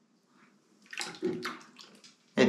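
Water splashing, a quick run of short splashes about a second in, lasting about a second.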